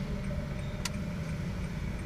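Car engine running low and steady, heard inside the cabin as the car creeps forward at low speed. A single sharp click about a second in.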